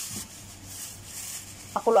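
Water at a rolling boil in a wide pan, bubbling steadily, with a low steady hum underneath.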